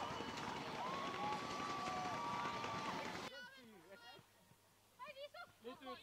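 Cheering over a goal at an outdoor football pitch: a noisy wash of voices with one long held shout. It breaks off suddenly about three seconds in, leaving only faint calls from players.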